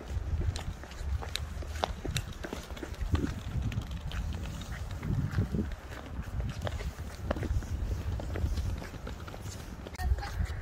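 The small plastic wheels of a child's three-wheeled kick scooter rattling over brick paving, with irregular sharp clicks and footsteps on the pavers over a low rumble.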